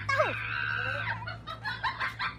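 A rooster crowing: one long, held call of about a second that fades out.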